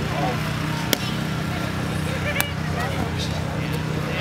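A footbag kicked sharply twice, about a second in and again near the middle, over a steady low hum and faint voices.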